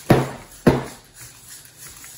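Two short, loud mechanical clatters about half a second apart, from a hand-held metal robot frame with a servo-driven head mount as it is rocked quickly.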